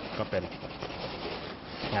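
Pencil scratching on canvas in quick shading strokes.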